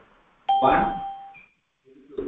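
A chime sounds once about half a second in, starting sharply and fading away within a second, with a short higher note at its end.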